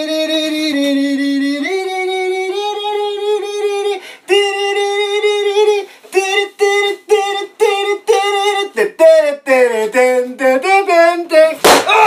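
A voice singing a tune: long held notes for about four seconds, a short break, then a run of short, separate notes. A sharp knock comes near the end.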